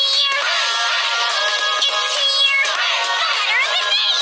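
Children's TV theme song: high-pitched singing over music, with a run of rising sliding tones near the end.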